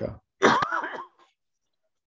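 A man clearing his throat once, about half a second in, in a short harsh burst, then near silence.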